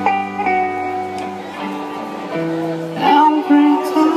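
Indie rock band playing live: held electric guitar chords ring over bass, changing every second or so, and a voice starts singing about three seconds in.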